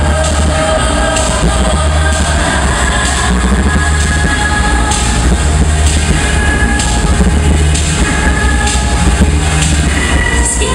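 A cappella group performing a dance-pop song live: a heavy, continuous vocal bass and a beatboxed beat, with held voices above.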